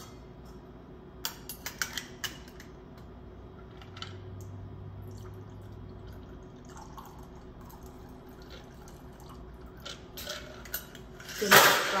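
Stirred cocktail strained from a glass mixing glass over ice into a rocks glass: a few clinks of ice and glass, then a quiet pour of liquid, and a louder clatter near the end.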